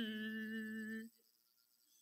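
A man's voice humming one steady, flat note for about a second, mimicking the drone of a small lawnmower-engine well drill, then it stops and the rest is near silence.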